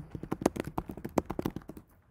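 Fast typing on a computer keyboard, a rapid run of key clicks at roughly eight to ten a second that stops just before the end.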